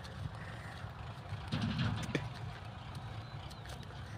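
Low, steady rumble of a distant tractor engine running, swelling slightly about one and a half seconds in.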